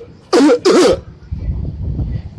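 A man laughing: two short, loud bursts of laughter close to the microphone.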